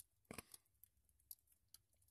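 Near silence, broken by a few faint, irregular clicks.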